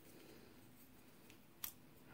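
Near silence, then one short sharp click about one and a half seconds in: the blade of the stainless Rough Ryder RR2145 frame-lock flipper knife snapping open on its bearings and locking.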